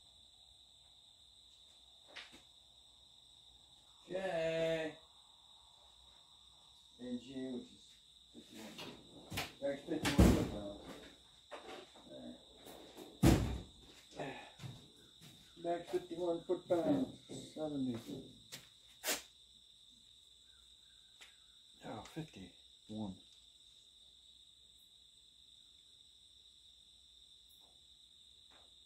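Off-camera repair work: a few sharp knocks and clunks of tools and parts being handled, the loudest two about ten and thirteen seconds in, with short stretches of muttered speech between them. A steady high-pitched tone runs underneath.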